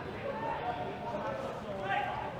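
Faint open-air ambience of a football pitch, with distant players' voices calling out weakly beneath a steady background hiss.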